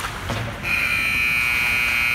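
Ice rink scoreboard buzzer sounding: a loud, steady, high buzzing tone that starts a little over half a second in and holds without a break.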